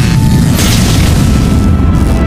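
Cinematic logo-reveal sound effect: a loud, deep boom and rumble, with a rushing whoosh swelling about half a second in, laid over music.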